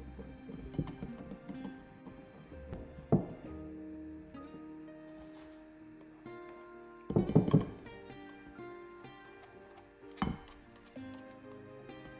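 Background music with steady notes, broken by a few sharp knocks and clinks of a wire whisk and plastic scraper against a glass mixing bowl as flour is worked into a dough; the loudest is a short cluster of knocks a little past the middle.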